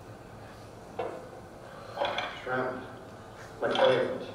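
Serving spoon and dishes clinking at a dinner table in a film soundtrack, heard through a hall's loudspeakers: a few separate clinks at about one, two and three and a half seconds in.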